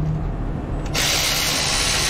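Milwaukee Fuel cordless ratchet running for about a second and a half on a socket, backing out a bolt during engine disassembly. It is a high whirring buzz that starts about halfway through and cuts off abruptly.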